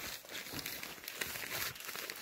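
Crinkling and rustling of a pop-up canopy's fabric side wall as it is handled and fitted to the frame leg, in irregular bursts.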